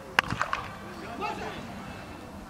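Cricket bat hitting the ball: one sharp crack just after the start, followed by a couple of fainter knocks.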